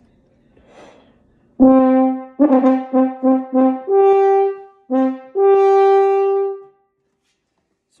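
French horn playing a short phrase. It opens with a firmly attacked low note, then repeats that note several times in quick tongued strokes. It then leaps up a fifth and ends on a long held upper note that stops shortly before the end.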